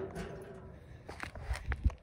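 A sheet-metal mailbox rings briefly as the sound of its door being shut dies away. It is followed by a few soft knocks and low thumps in the second half.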